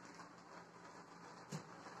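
Faint rattle of a handful of dried beans shaken on a cardboard plate, with one light knock about a second and a half in.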